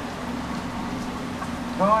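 Steady low hum over a faint, even hiss. A voice starts speaking just before the end.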